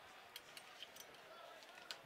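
Near silence: a faint steady hiss with a few soft ticks.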